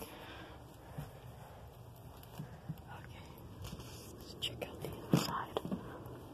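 Faint whispering over a quiet hiss, with a few short clicks and rustles about five seconds in.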